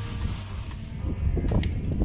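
Wind rumbling on the microphone over faint background music, with a few crunching footsteps on a pile of crushed stone about one and a half seconds in.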